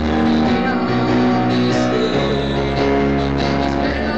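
Stage keyboard played live in piano voice, holding sustained chords that change to a new chord about two seconds in.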